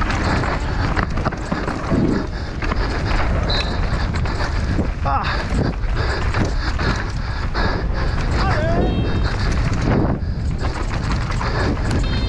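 Downhill mountain bike ridden at race speed over dry dirt, heard from a camera on the bike: wind rushing over the microphone, tyres scrabbling and rattling over the ground with frequent knocks from the bike, and spectators shouting as it passes.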